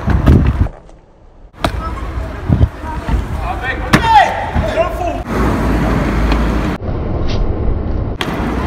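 Wind rumbling on the microphone, with a couple of sharp knocks and brief indistinct voices in the middle; the sound drops away abruptly about a second in and again near the end.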